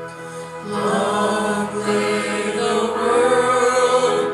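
A small mixed group of church singers singing into microphones over held instrumental accompaniment, their voices coming in louder less than a second in.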